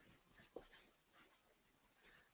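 Near silence: faint room tone with a few soft ticks, one slightly sharper about half a second in.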